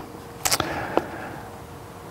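Sheets of paper handled in the hands: a brief click, then a short sharp rustle about half a second in that fades off, and a faint tick near one second.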